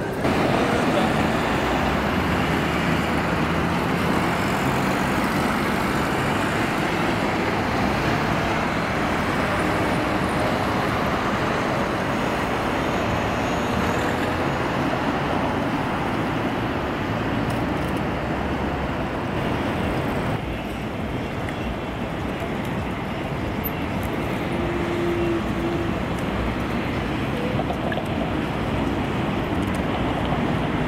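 Steady city traffic noise: cars and vans passing on a busy multi-lane road, engines and tyres in a continuous din, with the murmur of people on the street.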